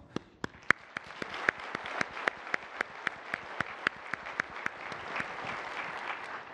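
Audience applauding, swelling over the first second or so, with one nearby pair of hands clapping steadily at about four claps a second above the rest.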